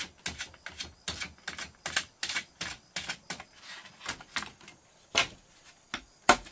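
A large knife cutting and splitting bamboo strips in quick, sharp cracks, about three a second. The strokes ease off near the end, with one heavier strike just before they stop.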